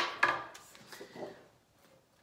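A sharp knock on the tabletop a moment in, followed by fainter rubbing and rustling as a sheet of stiff card is handled and lifted.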